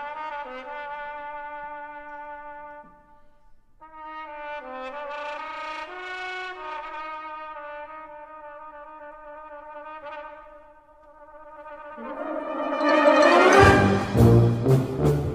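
Brass band playing soft, held chords that die away twice, then swelling into a loud full-band entry with percussion strikes at the very end.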